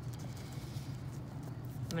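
Pen writing on paper on a hard desk: light scratching and tapping strokes over a steady low hum.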